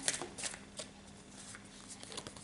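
Tarot cards being handled on a wooden tabletop: a few crisp card flicks in the first half second, then soft rustling of cards. A faint steady hum sits underneath.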